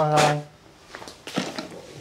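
A man's voice held on one steady pitch for about half a second, the drawn-out end of a spoken answer. Then it goes quiet, with a few faint knocks about a second and a half in.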